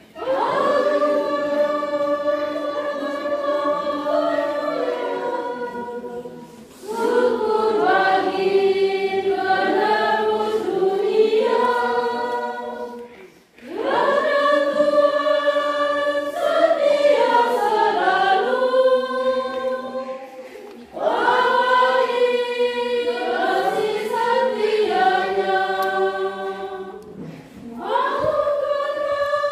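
Church choir singing a hymn in long phrases of about seven seconds, each followed by a brief pause for breath.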